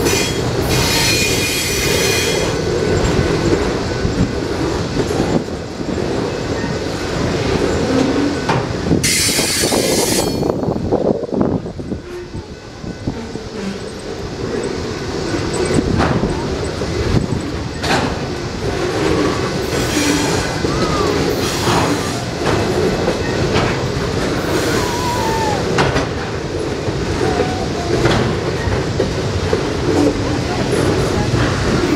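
Loaded flatcars of a long freight train rolling past: a steady rumble and clatter of steel wheels on rail, with high wheel squeals about a second in, around ten seconds, and a few shorter ones past twenty seconds.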